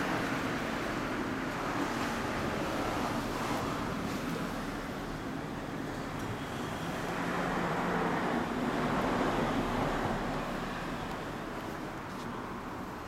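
Road traffic noise: a vehicle going by on the street, its sound swelling for a few seconds past the middle and then fading.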